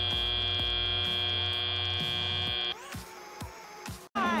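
End-of-match buzzer on an FRC competition field, one steady, high buzzing tone held for nearly three seconds as the match timer hits zero, then cutting off.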